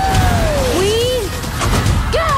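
An animated character's voice yelling in two long cries, the first sliding down in pitch and the second rising then falling, over the low running of go-kart engines.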